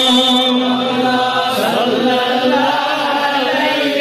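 A man's voice chanting a naat in long, held notes that waver and glide in pitch, without clear words.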